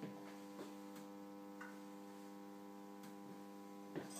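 Faint, steady electrical mains hum made of several steady tones, with a few faint ticks.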